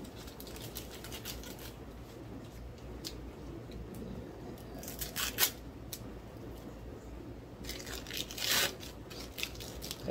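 Plastic packaging of sliced cheese being opened and handled, with scattered crinkles and small clicks, one sharp click about halfway through and a longer rustle near the end.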